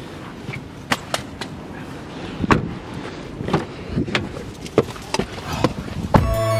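Scattered knocks and clicks over a low rumble, from things being handled and moved in and around a car with its rear door open.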